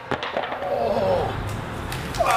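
A water ski clattering and scraping on concrete at the foot of a staircase, with a man's short voiced call about half a second in.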